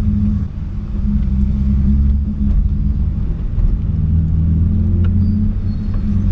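BMW 328i E36's 2.8-litre straight-six running while the car is under way, heard from inside the cabin, through a stainless exhaust with a six-into-two header. The sound dips briefly about half a second in, then holds steady.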